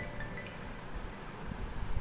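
Pause with faint, steady background noise and a low rumble, with no distinct sound event.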